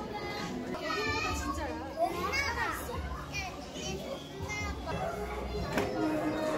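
Children's voices: chatter and high-pitched, excited calls from kids in the room, rising and falling in pitch.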